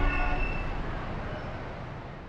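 Fading tail of an outro sound effect: a noisy rumble that dies away steadily, with a brief horn-like tone in the first half second.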